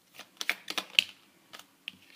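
Tarot cards being handled on a tabletop: a run of irregular light clicks and taps as the deck is picked up and cards slide against each other, the sharpest about halfway through.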